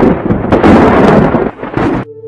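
Loud, rough rumbling storm noise recorded outdoors on a phone, the thunder and wind of an approaching storm cloud; it drops away about one and a half seconds in and cuts off suddenly at the end.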